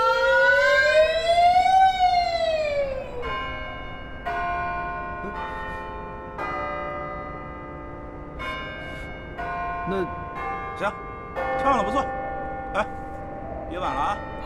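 A male singer holds one long, wavering Cantonese opera note that ends about three seconds in. Steady sustained musical chords follow, with short voice sounds coming in near the end.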